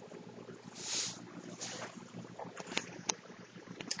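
Faint handling noises as a webcam is moved: a soft rush of air about a second in, then a few light clicks.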